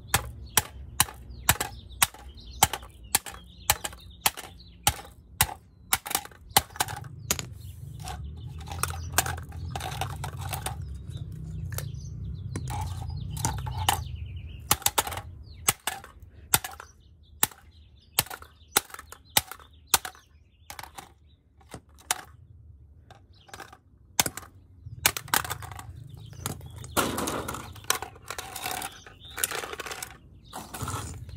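A claw hammer repeatedly striking the plastic housing of an X10 wireless camera kit's receiver on concrete: sharp blows about two a second for the first half, then fewer, more irregular strikes.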